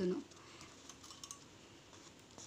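Faint small clicks about a second in as a steel needle is pushed and pulled through hand-held cotton cloth with embroidery thread.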